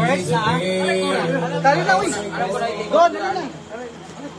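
People talking and chattering, with a low steady note ringing underneath for about the first two seconds.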